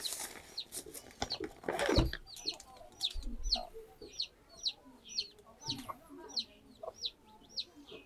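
A chick peeping over and over, short high cheeps about two a second, with faint low clucking beneath from the hen. Rustling and a couple of knocks of clothing being handled in the first two seconds.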